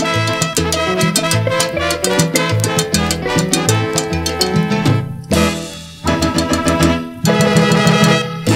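Salsa band recording playing an instrumental passage over a steady, repeating bass line. The band drops out briefly about five seconds in and again near the end before coming back in full.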